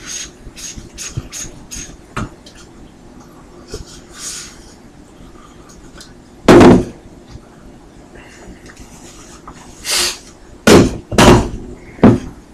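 A towel rubbing over a plastic Mudjug spittoon as it is dried by hand, then loud clunks of hard plastic as the jug is handled and set down on the countertop: one about halfway through and two close together near the end.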